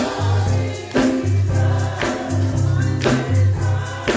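Gospel choir singing with a steady beat and a deep bass line.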